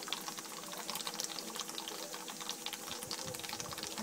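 Water boiling in the pot of a copper alembic still on a gas burner: dense, irregular crackling and ticking over a faint steady hum.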